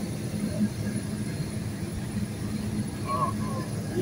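Car driving along a highway: steady low road and engine rumble heard from inside the vehicle, with a brief voice about three seconds in.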